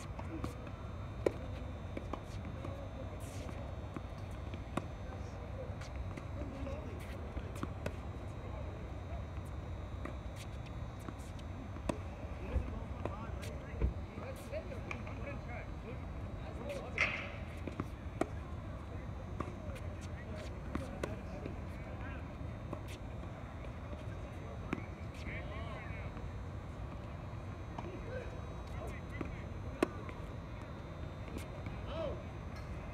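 Tennis balls struck by racquets and bouncing on a hard court during play, heard as scattered sharp pops, with a serve struck near the end. Faint voices talk over a steady low background.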